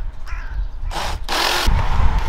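Cordless drill-driver whining steadily as it drives a screw through the siren housing into the brick wall, starting about one and a half seconds in, after two short noisy bursts. A low rumble runs throughout.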